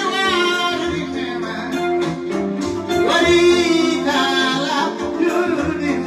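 A kora being plucked in a running pattern of notes, with a man's voice singing over it in wavering phrases, one at the start and a longer one from about three seconds in.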